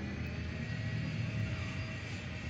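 Steady low background rumble with a faint steady hum, like distant traffic or machinery, with no knocks or clicks.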